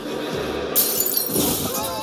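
An audience laughing at a stand-up comedian, broken just under a second in by a sudden, loud shattering crash that lasts under a second.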